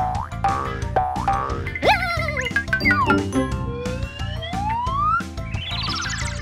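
Children's cartoon background music with a steady beat, overlaid with cartoon boing effects: short springy pitch sweeps in the first few seconds, then one long rising whistle-like glide about four seconds in.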